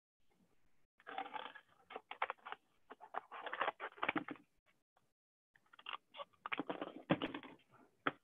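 Crackling and rustling of a small piece of cardboard being handled and worked at a tabletop, in two bursts of quick clicks with a pause between, heard thinly over a video call.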